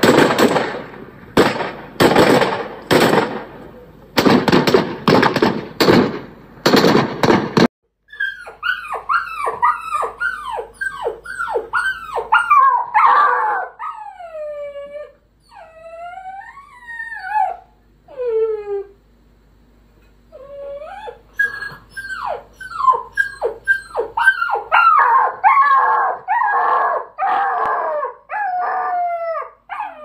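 A rapid run of loud bangs that stops suddenly after about seven seconds. Then dogs whine and howl in many short calls that fall in pitch, pause briefly near the middle, and come back more densely and overlapping toward the end.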